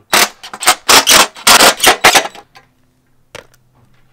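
Cordless impact driver running in several short hammering bursts over about two and a half seconds, torquing down the screws that hold a roof rack's crossbar to its windscreen. A single click follows near the end.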